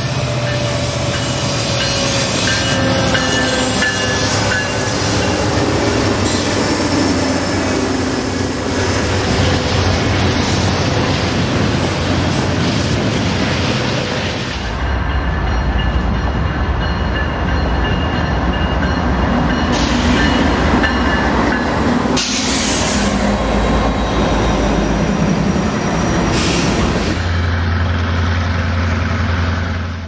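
Diesel freight trains passing close by: locomotive engine rumble with the clatter and squeal of freight-car wheels on the rails. About halfway through it changes to a second train whose engine gives a deeper low rumble.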